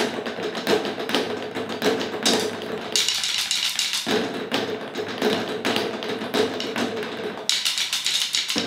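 Several people beating wooden sticks on old car tyres and a plastic bucket, the strikes packed into a fast, dense rhythm.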